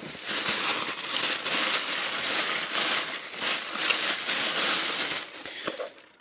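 Thin clear plastic bag crinkling and rustling continuously as a soldering iron is pulled out of it by hand, dying away near the end.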